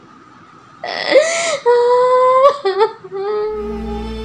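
A man crying out in pain in a few loud, drawn-out wails. Near the end a low, sustained drone comes in as sad background music begins.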